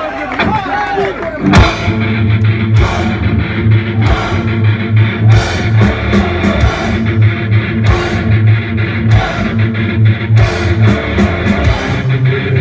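Live heavy metal band launching into a song: after about a second and a half of gliding guitar and crowd noise, distorted electric guitars, bass and drums come in together on a loud hit and play a heavy, driving riff with regular cymbal strokes.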